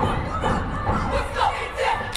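Cheerleading squad shouting a cheer together in short, rhythmic syllables, with crowd noise behind.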